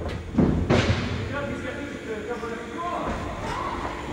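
Two heavy thumps in quick succession just under a second in, followed by indistinct voices.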